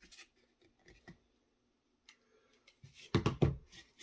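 Light handling noise of craft pieces being moved on a tabletop: a few faint clicks and taps, then a short louder cluster of knocks and rustling about three seconds in.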